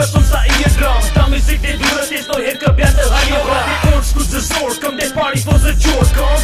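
Hip hop track with rapping over a beat, whose deep bass hits slide down in pitch.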